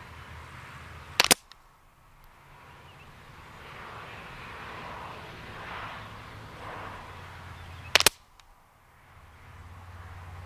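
Two suppressed shots from a Ruger 10/22 .22LR rifle firing subsonic ammunition, each a single sharp report, about seven seconds apart, heard from the target end of a 10-yard range.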